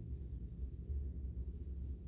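Faint strokes of a marker writing on a whiteboard, over a steady low room hum.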